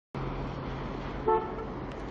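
City street traffic noise with a steady low hum, starting abruptly, and one short car horn toot a little over a second in.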